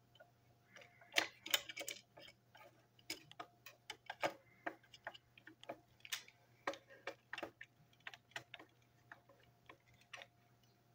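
Small plastic parts of a model locomotive being handled and fitted together by hand, giving irregular light clicks and taps, several a second.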